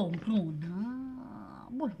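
A woman's voice drawing out a long wordless 'oooh' that dips in pitch, then rises and holds for about a second before fading. A short 'oh' follows near the end.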